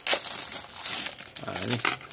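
Thin clear plastic sleeve crinkling as a remote control is pulled out of it by hand, loudest just after the start.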